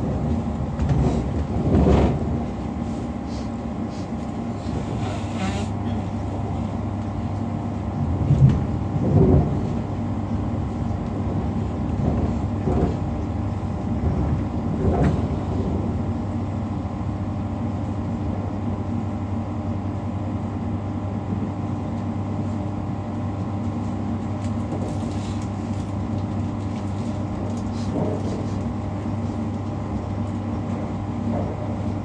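Inside a Class 345 electric multiple unit running at speed: a steady hum with several low steady tones, broken by occasional knocks and rattles, the loudest about eight to nine seconds in.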